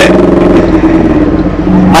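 Motorcycle engine running at a steady pitch, loud and close to the microphone.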